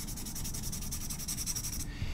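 Conté red chalk (sanguine) pencil hatching quickly on toned paper over a layer of oily white pencil, which resists it. The scratchy strokes come evenly, about ten a second, and stop just before the end.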